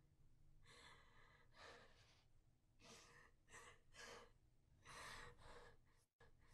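A woman's faint, uneven breathing: about seven short gasping breaths and sighs, spaced irregularly, over a low room hum.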